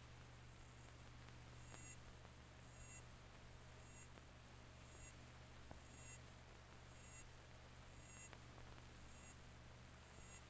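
Near silence: a faint steady low hum and hiss, with faint short high ticks about once a second.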